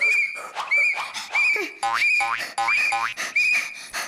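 A whistle blown in short, even blasts, about six in four seconds, beating time for exercises. A lower sound joins underneath in the middle.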